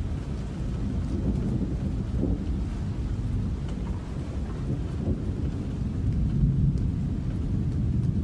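A steady low rumbling noise with a faint hiss and a few scattered light ticks, with no melody or beat.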